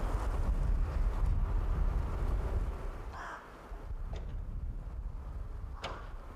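A steady low rumble, like wind or distant traffic, with one short, harsh bird call about three seconds in and two sharp clicks later on.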